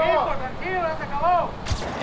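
Several drawn-out calls from raised voices on the field, rising and falling in pitch, then a single sharp bang near the end.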